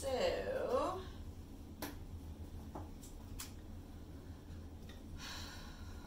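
A brief wordless vocal sound in the first second, then a few faint scattered clicks and a soft breathy rustle near the end, over a steady low hum.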